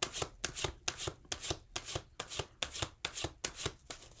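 A deck of tarot cards being shuffled by hand: a quick, even run of card slaps, about five a second.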